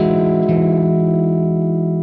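An electric guitar major nine chord ringing out, held with no new attack, its upper notes slowly fading.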